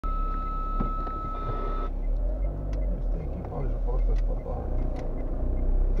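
Low rumble of a car's engine and tyres heard inside the cabin while driving slowly along a street, with a steady high-pitched tone for the first two seconds that cuts off suddenly.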